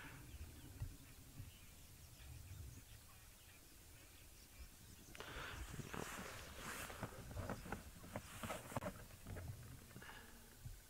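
Faint low rumble, then about halfway in a few seconds of rustling and crackling as spotted hyenas move through dry grass and brush.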